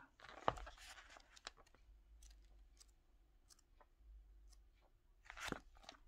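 Faint handling of paper and card: a guidebook's pages and a cardboard card box, with scattered light clicks, a sharp tap about half a second in, and a louder rustle near the end as the card deck is lifted out.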